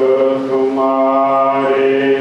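A man's voice chanting Sikh scripture (Gurbani) in long, held notes, with a change of note a little under a second in.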